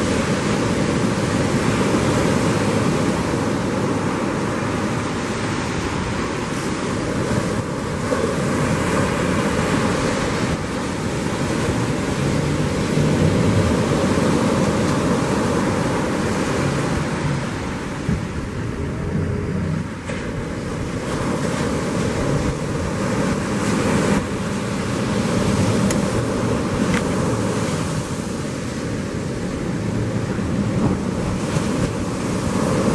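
Ocean surf breaking steadily, with wind buffeting the microphone.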